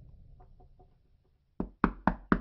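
Knuckles knocking on a wooden door: a few faint taps, then two sharp knocks near the end.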